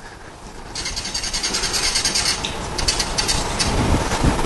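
Felt-tip marker writing on a whiteboard: scratchy squeaking in quick short strokes, starting about a second in.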